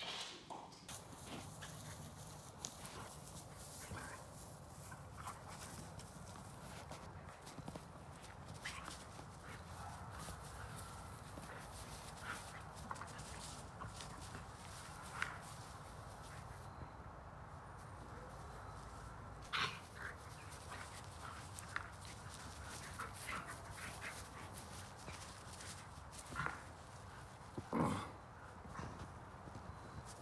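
A husky and a wolfdog at play, with scattered brief dog vocal sounds over a quiet background; the loudest, near the end, is short.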